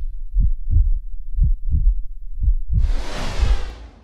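Heartbeat sound effect from a title sequence: deep double thumps, about one pair a second. Near the end a loud rushing whoosh swells over them and cuts off suddenly.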